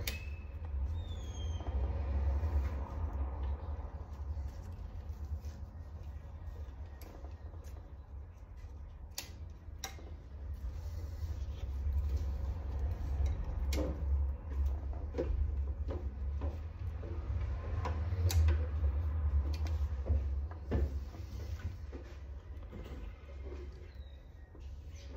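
Scissors snipping dry, browned leaves off a peace lily, heard as a few scattered sharp clicks with leaf rustling between them. A steady low hum runs underneath.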